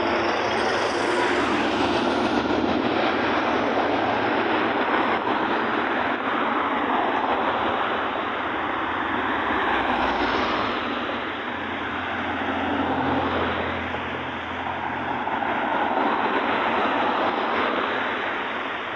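Steady road and wind noise from riding in a moving vehicle, with a brief low swell about ten seconds in as a white van passes close alongside.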